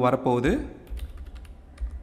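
Computer keyboard typing: a quick run of keystrokes starting about a second in, as code is typed into an editor.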